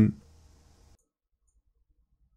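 Near silence after the end of a spoken word, with two faint clicks of a computer mouse button a little over a second in.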